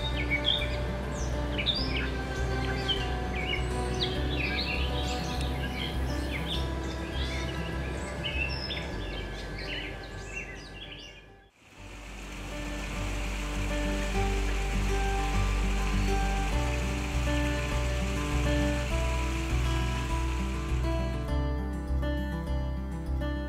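Wild birds chirping and singing over a soft background music bed. The sound dips out briefly about halfway through, then the music returns over a steady high hiss of outdoor ambience, with few bird calls.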